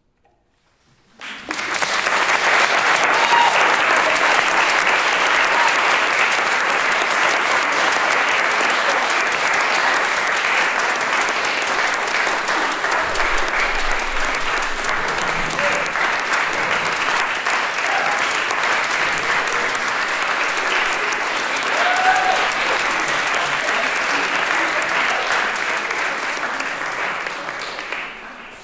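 Audience applauding, breaking out suddenly about a second in after a brief silence, holding steady and fading near the end, with a few cheering voices in it.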